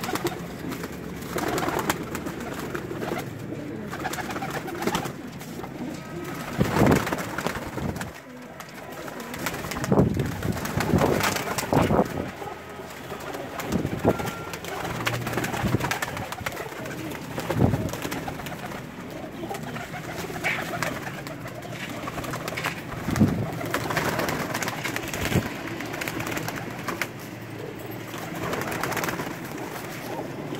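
A flock of domestic pigeons cooing in an enclosed loft, with a few sharp wing flaps as birds take off.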